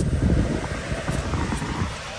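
Hyundai Verna's air-conditioning blower turned up to full, a steady rush of air from the dashboard vents buffeting the microphone; it starts abruptly and fades near the end. It is heard as very strong.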